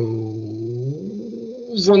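A man's long, drawn-out hesitation sound, a held "eh", rising in pitch about a second in, then running into ordinary speech near the end.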